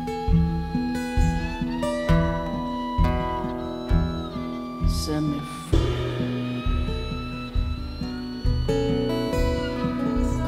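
Live acoustic band playing an instrumental passage: steadily strummed acoustic guitars with a fiddle carrying a sustained melody over them.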